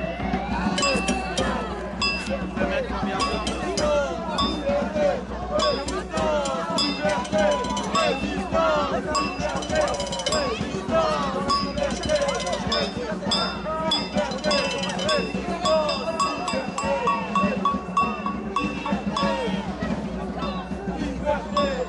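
A metal bell, a cowbell by its sound, clanking again and again throughout, its strikes ringing over the voices of a marching crowd.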